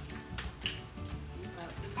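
Background music with a low, repeating bass, under low talk and a couple of short clicks.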